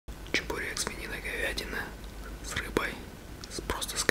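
A man whispering, with several short sharp clicks between the words.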